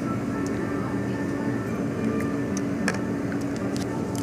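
Steady low mechanical hum of indoor background noise, with a few faint light clicks scattered through it.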